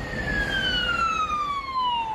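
Emergency vehicle siren wailing, its pitch falling slowly and steadily, over a low rumble.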